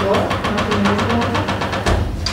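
Laughter that runs as a fast, even train of short pulses.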